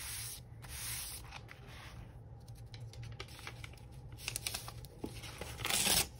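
Hands smoothing and rubbing paper down onto an art journal page: dry paper rustling and scuffing with scattered small crackles, and a louder burst of paper noise near the end.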